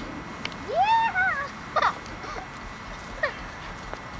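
A high-pitched wavering vocal call about a second in, rising and then wobbling, the loudest sound here, followed by a short sharp squeak and a fainter falling call.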